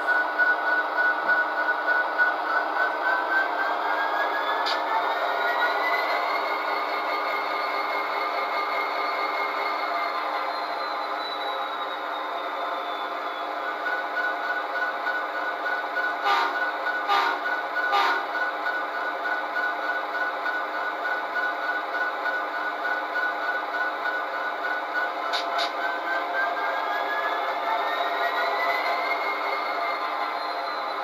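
A DCC sound decoder in an HO-scale Athearn Genesis SD70ACe model plays a recorded diesel locomotive engine through its small speaker. The engine runs steadily, its pitch climbs as it revs up a few seconds in and again near the end, and there are three short sharp sounds about two-thirds of the way through.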